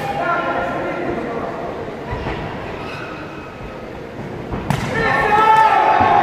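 Shouting voices from around a kickboxing ring, with one sharp thud in the ring about three-quarters of the way through, followed at once by louder, sustained yelling.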